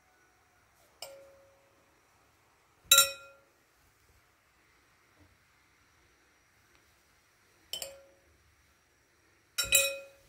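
Metal spoon clinking against a bowl four times, each clink ringing briefly; the loudest comes about three seconds in, and a quick double clink near the end.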